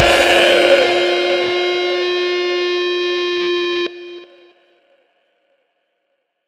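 Black metal song ending: the drums and bass stop and a last distorted electric guitar chord is held, ringing on alone. It cuts off sharply about four seconds in, leaving a brief fading tail, then silence.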